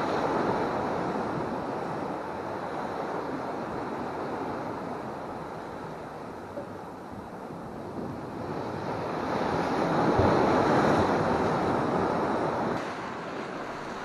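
Ocean surf washing and breaking against jetty rocks, swelling and easing, loudest about ten seconds in, with wind buffeting the microphone.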